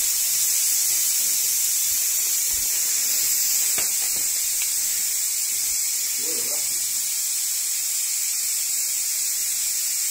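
Air pump inflating an inflatable stand-up paddleboard through its hose: a steady, even hiss of air with no pumping strokes.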